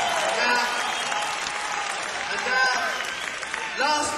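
Theatre audience applauding and cheering, with a few voices calling out, picked up on a microphone among the crowd; the applause slowly dies down.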